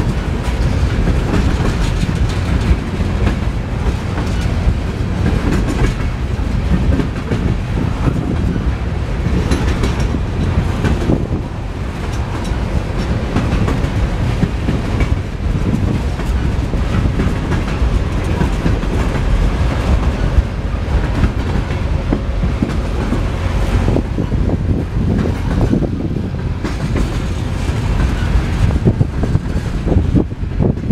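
Tropicana juice train's insulated boxcars rolling past close by: a steady rumble of wheels on rail, with the clickety-clack of wheels crossing rail joints.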